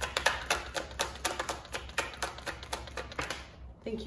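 Tarot cards being shuffled by hand, a quick run of card taps about four a second that stops about three seconds in.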